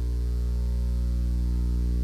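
Steady electrical mains hum, a low even buzz with no other sound over it.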